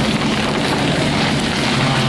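Chairlift machinery running with a steady low drone at the loading station.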